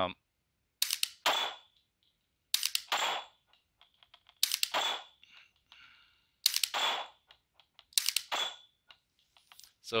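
Five dry-fire trigger pulls on an AR-15 fitted with a Mantis Blackbeard auto-resetting trigger system, one every second and a half to two seconds. Each is a sharp click of the trigger breaking, followed a moment later by a short mechanical burst as the Blackbeard resets the trigger.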